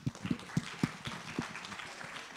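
Audience applauding, a patter of many hands with a few louder, closer claps standing out.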